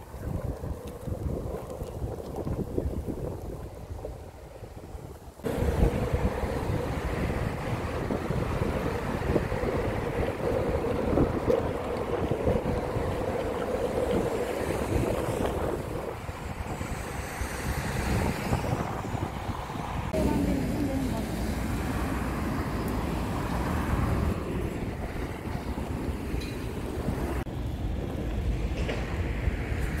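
Skateboard wheels rolling over paved paths, a steady rumble mixed with wind buffeting the microphone, stepping up in loudness about five seconds in.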